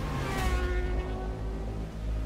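Film trailer soundtrack of a car scene: a deep, steady rumble with several sustained tones above it that dip slightly at first and then hold.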